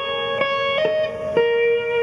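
Guitar playing a short blues phrase of single notes, each held and ringing until the next begins, about four notes in two seconds: the lick played legato, without staccato.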